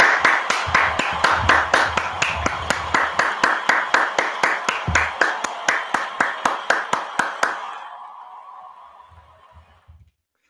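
Applause: steady, evenly spaced hand claps, about four or five a second, over a wash of clapping. The claps stop about three-quarters of the way through and the applause fades out.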